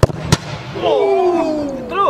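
A football kicked hard, a sharp thump, followed about a third of a second later by a second sharp knock as the ball strikes something at the goal. Then a loud, drawn-out cry of a man's voice, falling in pitch.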